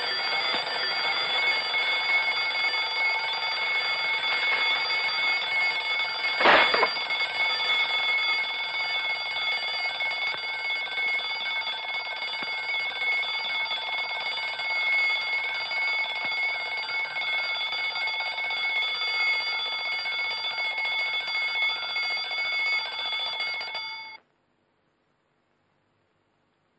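Alarm clock bell ringing continuously, with one sharp knock about six and a half seconds in; the ringing cuts off suddenly near the end, as if switched off.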